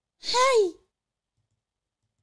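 A woman's single short, breathy vocal exclamation, about half a second long, its pitch rising then falling.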